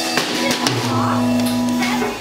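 Live electric guitar and drum kit: a few drum hits, then an amplified electric guitar chord held and ringing on from a little under a second in.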